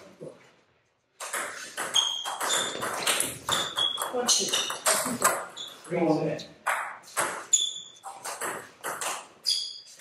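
Table tennis rally: the ball clicking off the table and the bats in quick succession, several hits leaving a short high ring, starting about a second in.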